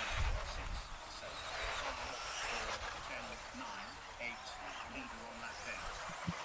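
Faint distant voices talking over a low, even outdoor hiss.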